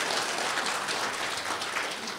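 Audience applauding, the clapping slowly fading toward the end.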